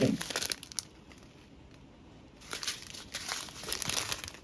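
Clear plastic drill packet crinkling as it is handled, the crackle stopping for about a second and a half, then resuming and continuing to the end.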